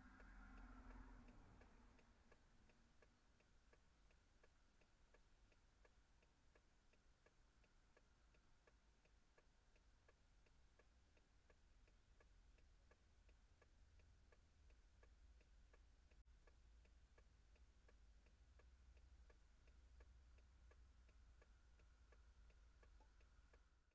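Faint, even ticking at about two ticks a second, typical of a vehicle's hazard-light flasher heard inside the cab, over a low hum.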